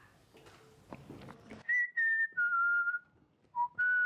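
A man whistling a short tune, starting about a second and a half in: a few held notes stepping down in pitch, a brief lower note, then another held note.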